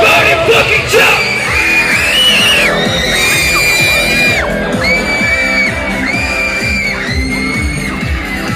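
Live K-pop band music played loud with a steady beat, overlaid by a run of long, high-pitched held screams from the crowd, each lasting about a second.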